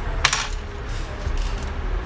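A single short metallic clink about a quarter second in, ringing briefly, from the metal laptop hinge bracket and screwdriver being handled against each other. A steady low rumble runs underneath.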